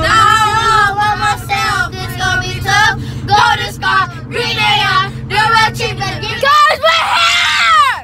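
Children singing loudly together in a car, over a steady low hum that cuts off suddenly about six and a half seconds in. Near the end one voice rises into a long, loud high note.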